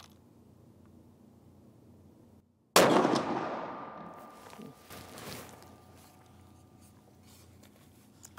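A single shot from a Sako S20 Hunter rifle in .308 Winchester about three seconds in, sudden and loud, with a long echo that dies away over about two seconds. A few fainter knocks follow.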